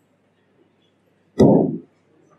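A single loud, short thump of the microphone being handled, about one and a half seconds in, against near silence.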